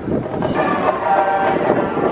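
A steady pitched tone with several overtones, held for a bit over a second, over outdoor street and crowd noise.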